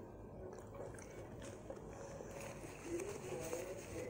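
Faint sounds of people eating: quiet chewing with small mouth and finger clicks, and a faint hum about three seconds in.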